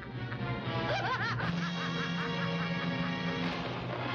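An old witch's cackling laugh, a quick run of repeated rising-and-falling notes starting about a second in, over orchestral film score with held low notes.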